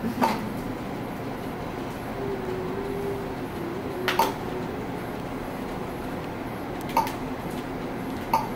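Steady background hiss of the exam room with three short, sharp clicks: one right at the start, one about four seconds in and one about seven seconds in, and a faint low hum in the middle.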